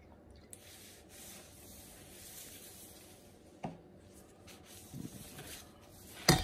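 Faint rubbing and squishing of a gloved hand spreading Worcestershire sauce over a raw brisket, with one short knock about three and a half seconds in.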